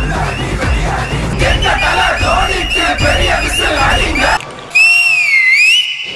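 Music with heavy bass under crowd screams and cheers, which cuts off about four and a half seconds in; a loud gliding tone then dips and rises in pitch for over a second.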